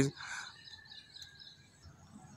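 A pause in a man's speech, leaving faint background noise with faint bird chirps in the distance.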